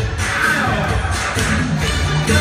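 Upbeat music from an electronic keyboard with a heavy bass line, with a voice and a lively crowd over it.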